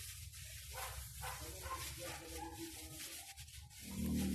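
Faint rustling of grass bedding as a rabbit moves about in its wire cage.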